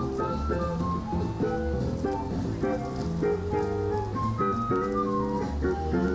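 A small jazz band playing live outdoors: a quick melody that runs up and down over held chords and a bass line.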